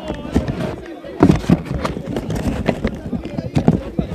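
Indistinct shouts from football players on the pitch, with irregular sharp knocks scattered throughout, the loudest burst about a second in.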